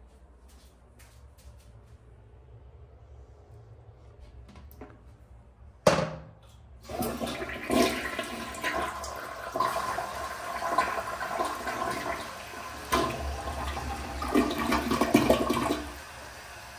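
Vintage Eljer toilet flushing: a sharp click of the tank lever about six seconds in, then loud rushing water swirling down the bowl for about nine seconds, an excellent flush.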